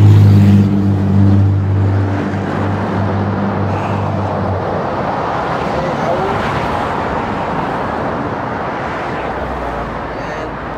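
Road traffic: a motor vehicle's engine hum, steady and low, that dies away about halfway through, over a continuous rush of road noise.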